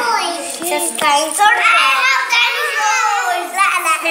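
Young children's voices talking in high pitch, with one long, drawn-out vocal sound in the middle; no words are made out.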